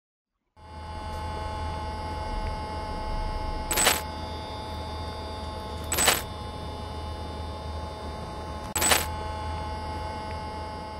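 Steady electrical hum with a low drone and several level tones, starting about half a second in, broken three times by short bursts of static, the sound of a corrupted video signal glitching.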